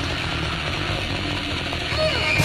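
Heavily distorted electric guitar and bass buzzing through a heavy metal passage, without cymbals or vocals.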